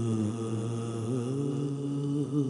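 A man's voice chanting a slow devotional recitation, holding long wavering notes that bend slowly in pitch.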